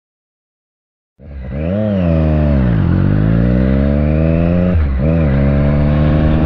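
Motorcycle engine heard from the rider's seat, cutting in suddenly about a second in and pulling away. The revs rise, fall back, then climb steadily, with a quick drop and recovery near the end like a gear change, over wind rush.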